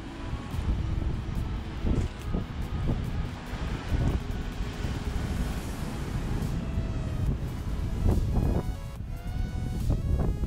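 Wind buffeting an action camera's microphone in a low, uneven rumble, with ocean surf washing below the bluff. Electronic background music runs under it and comes forward near the end as the wind noise drops.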